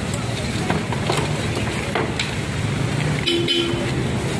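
Street traffic with an engine running, broken by scattered sharp knocks of wooden pushcarts being handled and broken apart. A vehicle horn toots briefly near the end.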